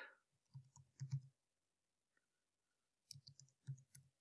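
Faint computer keyboard keystrokes: a quick run of taps, a pause of about two seconds, then another run, as a search term is typed in.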